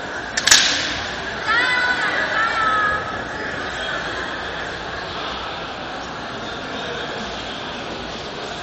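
A sharp crack of a bamboo shinai striking, about half a second in, followed by a kendo fighter's drawn-out kiai shout lasting about a second and a half, over the steady murmur of a large sports hall.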